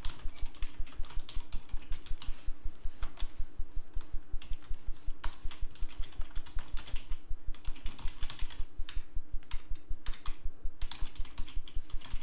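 Typing on a computer keyboard: a quick, even run of keystrokes, with a faint steady hum underneath.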